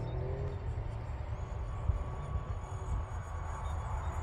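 Wind rumbling on the microphone, with the faint whine of the E-flite UMX A-10's twin electric ducted fans as the model flies high overhead.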